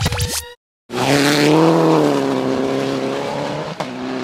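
Rally car engine running hard at high revs, loud and fairly steady in pitch, easing a little toward the end. There is a single sharp click just before the end.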